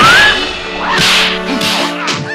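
Fight sound effects: a sharp swish-and-hit strike right at the start and another about a second in, laid over background music with held notes.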